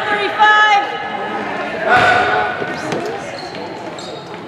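A basketball being dribbled on a hardwood gym floor during a game. Spectators' shouts and drawn-out calls echo through the gym just after the start and again about two seconds in, and these are the loudest sounds.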